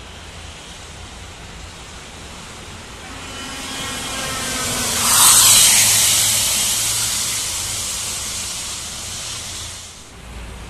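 An intercity coach approaching and passing close at highway speed: engine and tyre noise build over a few seconds to a rush of air about five seconds in, then fade as it goes away, the engine note dropping in pitch after it passes.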